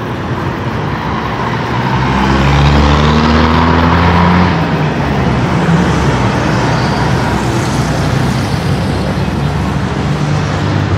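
Road traffic on a city street: engines running and tyres rolling. About two seconds in, one vehicle grows louder as it passes close by, its engine note falling as it goes, and then the steady traffic hum continues.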